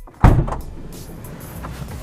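Volkswagen Transporter 6.1 van's left sliding side door unlatching with a loud clunk about a quarter second in, then sliding open along its track.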